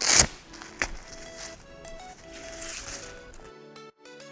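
Background music with steady notes, broken right at the start by a short, loud rush of noise and, just under a second in, by a sharp click.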